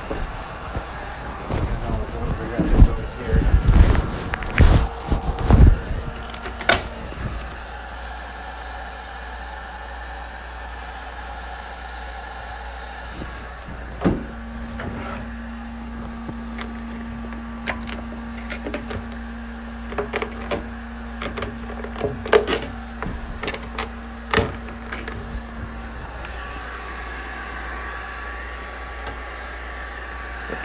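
Irregular knocks, clicks and rustles from hands working a desk drawer on metal slides and lifting and pressing vinyl wrap film; the loudest thumps come in the first six seconds. A steady low hum runs through the middle stretch.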